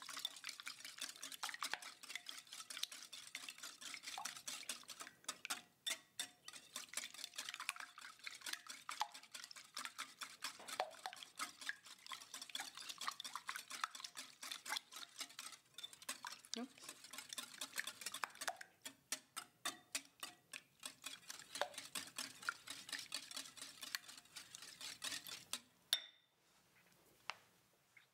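Stainless wire whisk beating raw eggs in a glass mixing bowl: a quick, steady run of light clicks and taps as the wires hit the glass, stopping at the very end.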